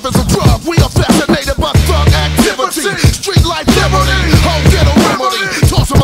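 Hip hop track with a rapped vocal over a deep bass line that drops in and out.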